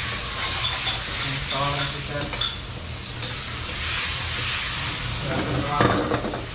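Food sizzling hard in a hot wok over a gas flame, steady and loud, while it is stirred and turned with metal tongs.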